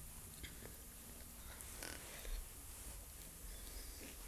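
Faint chewing and mouth sounds from biting into a tough gummy popsicle, with a few small clicks and a slightly louder smack about two seconds in.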